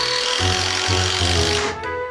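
A power driver runs for about a second and a half, driving a screw into a wooden furring strip, then stops suddenly. Background music plays throughout.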